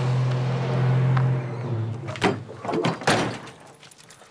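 Chevrolet S-10 pickup truck's engine running steadily, then switched off about two seconds in. The door clicks open and is slammed shut about a second later.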